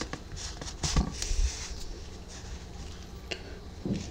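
Soft rustling and scratching of yarn as a metal yarn needle is pushed and drawn through crochet stitches to sew the headband's ends together, loudest about a second in, over a faint steady hum.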